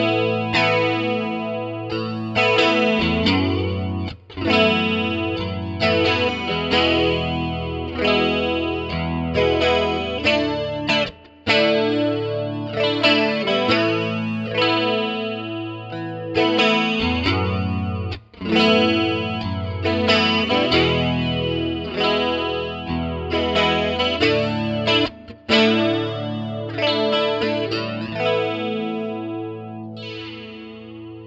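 Guitar chords played through a Roland Jazz Chorus 77 stereo combo amp and recorded with a spaced pair of JZ BT-202 small-diaphragm condenser mics. The chords are struck every second or two and left to ring, with a short break about every seven seconds, and the last chord dies away near the end.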